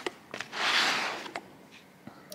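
Soft rustling with a couple of light clicks as a plastic flower pot holding a cyclamen is picked up and turned in the hand.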